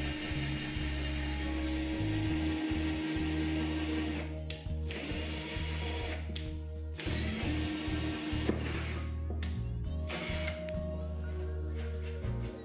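Cordless drill boring a pilot hole through masking tape into a cabinet top, running in spells with short pauses about four, six and a half and nine seconds in, over background music.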